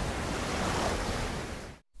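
Ocean-waves sleep sound played on a Nest Hub smart display: a steady wash of surf noise that fades out near the end.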